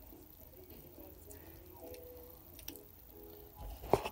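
Quiet room with a few faint clicks of handling, then a louder knock just before the end as the resting phone camera is picked up and moved.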